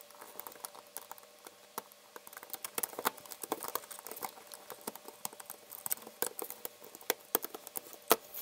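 Rubber bands being worked off the clear plastic pins of a Rainbow Loom with a plastic hook: many small, irregular clicks and taps.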